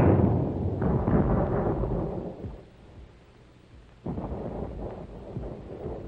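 Battle sound effects of shell explosions. A loud blast dies away over the first couple of seconds, with another burst about a second in. After a brief lull, a quieter rumble of further fire starts suddenly near the end.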